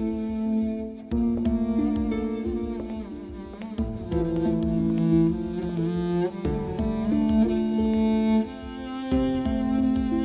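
Dramatic background score: sustained bowed-string notes stepping slowly from pitch to pitch over a low, steadily pulsing beat.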